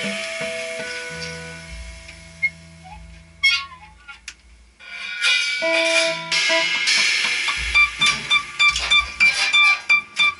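Free-improvised duo of electric guitar and drum kit. Held guitar notes fade to a near hush about halfway through, then cymbal wash and held tones build back up, breaking into quick repeated hits near the end.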